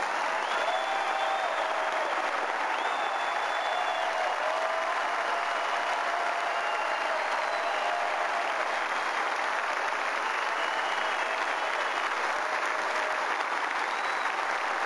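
A large convention crowd applauding steadily, with a few held calls from the crowd rising above the clapping.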